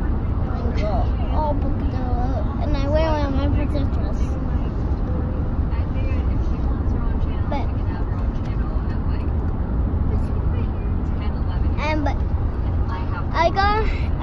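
Steady low rumble of a car heard from inside the cabin, constant throughout, with a child's voice over it at times.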